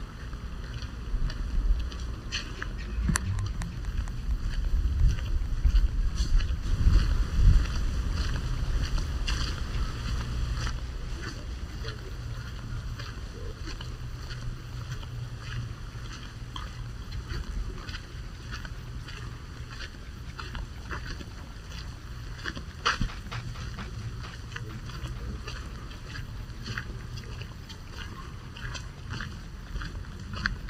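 Wind buffeting the microphone of a handheld camera: a gusty low rumble, strongest in the first third, with scattered light clicks over it.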